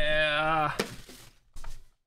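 A man's voice holding out the end of "come on, baby", followed by a single light tap about a second in.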